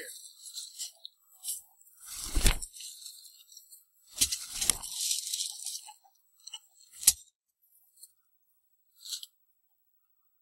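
Leftover kitchen scraps being tipped and knocked out of a metal pail onto wood-chip bedding: a few short noisy bursts, the longest close to two seconds, and one sharp knock a little after seven seconds in.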